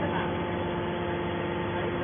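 Hydraulic metal scrap baler running, its power unit giving a steady hum at a constant pitch.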